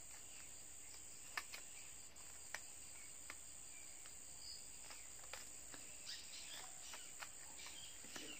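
Quiet handling of satin ribbon being pulled through and folded by hand: a few soft, scattered clicks and rustles, over a steady high-pitched drone of crickets.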